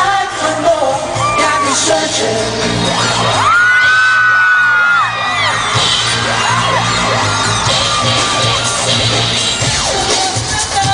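Live pop song played loud through a concert hall's sound system, heard from among the audience: a steady beat with singing. High cries rise and fall over the music, one held for about a second and a half near the middle.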